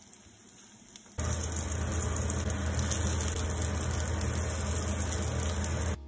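Squares of egg-coated tofu sizzling as they fry in oil in a stainless steel pan: a steady hiss over a low hum, a few light ticks at first, then much louder from about a second in until it cuts off abruptly.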